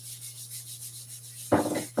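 Whiteboard eraser wiping dry-erase marker off a whiteboard in quick back-and-forth strokes, a faint rubbing with a louder sound about a second and a half in.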